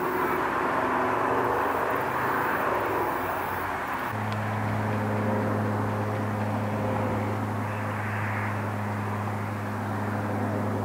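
Steady rumble of distant traffic, joined about four seconds in by a steady low engine-like hum.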